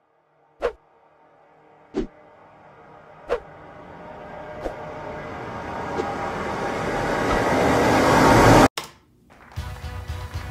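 Countdown intro sound effect: a rising noise swell that builds for about eight seconds, with a sharp hit about every second and a third, then cuts off suddenly. Music begins right after.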